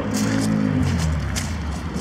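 A motor vehicle going by outdoors, its engine note falling steadily in pitch as it passes.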